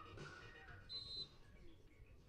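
Faint background music fading out, then a short, steady referee's whistle blast about a second in, the signal to serve.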